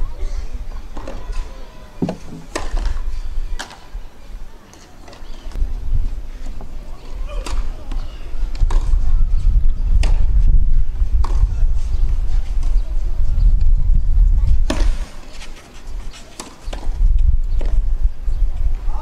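Tennis ball struck by rackets during a rally on a clay court: single sharp hits a second or more apart, the loudest about ten and fifteen seconds in. Underneath runs a loud low rumble that swells in the second half.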